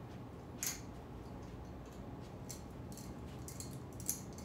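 A small hand wire cutter from a floral kit being worked on wire: one sharp snip about half a second in, then a few fainter clicks near the end, over low room hum.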